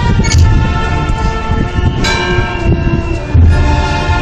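Procession band playing a slow funeral march: sustained brass chords over bass drum beats, with ringing crashes just after the start and about two seconds in.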